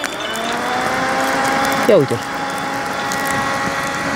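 Small battery-powered fan switched on: its motor whine rises as it spins up over about the first second, then runs steady with a rush of air. The air is blowing onto the grill's charcoal.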